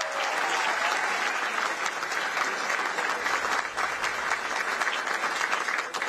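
A large audience clapping steadily: dense, even applause that fills the hall.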